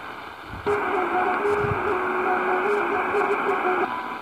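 Tecsun PL-450 portable radio being tuned across the medium-wave band, giving static and hiss. It is quieter at first, then about two-thirds of a second in it jumps louder onto a new frequency with a steady whistle tone that wavers slightly in pitch. The whistle cuts off just before the end as the radio steps on to the next channel.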